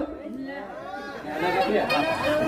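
Men's voices speaking, quieter for the first second or so, then louder near the end.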